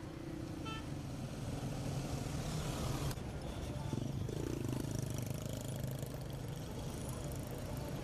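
Pickup trucks and other street traffic driving past, their engines running steadily, with a brief falling tone about halfway through.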